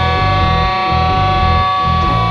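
Rock band playing live: guitar holding long steady notes over a bass line that pulses in short, even notes.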